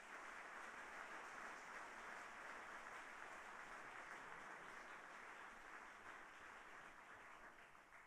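Audience applauding, a faint, even patter of many hands clapping that thins out near the end.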